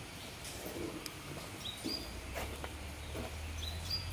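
Quiet outdoor ambience with a few short, high bird chirps and faint scattered clicks, and a low steady hum that comes in about halfway through.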